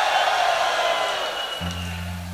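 Live rock band between sung lines, with audience cheering over a high held note. A low sustained bass note comes in near the end.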